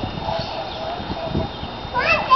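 Irregular low, soft thuds of a small child's bare feet wading in a shallow mud puddle, with a child's voice faint in the background.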